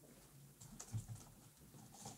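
Faint computer keyboard keystrokes: a few soft taps about halfway through, as keys are pressed to move between crossword clues.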